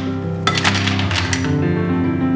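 Mussels in their shells tipped into a stainless steel pan, clattering against each other and the pan in a quick run of clicks for about a second, over background music.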